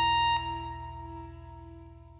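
The last held chord of a folk-punk song is cut off about half a second in. Its final notes then ring on and fade away.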